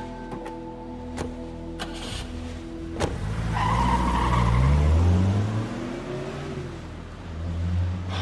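A few sharp knocks, then about three seconds in a car pulls away hard: its tyres squeal briefly and the engine revs up, rising in pitch, loudest around the middle before fading.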